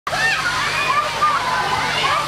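A crowd of children shouting and calling in high voices, with the steady hiss of a hose's water jet spraying down beneath them.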